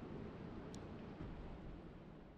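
Faint, steady low-pitched noise without any tone in it, slowly fading, with one faint click about three-quarters of a second in.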